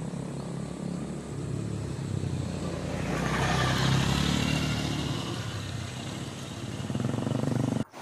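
A motor vehicle passing: a low engine hum that swells to its loudest about four seconds in, then fades away again.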